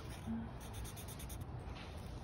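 Faint scratchy rustle of a paper sheet rubbed and shifted under fingertips on a table, with a brief low tone about a quarter second in.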